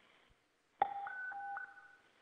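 Police dispatch radio keying up with a click, then a two-note alert tone alternating low and high, about four notes in a second.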